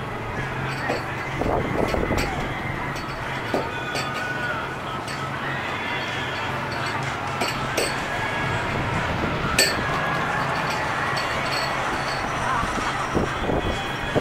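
Outdoor crowd ambience with background voices, broken by a few sharp clicks of plastic balls landing and bouncing among the plastic cups of a ball-toss game. The loudest click comes about nine and a half seconds in.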